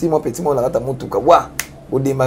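A man speaking in an animated way, with a few short, sharp clicks between his words.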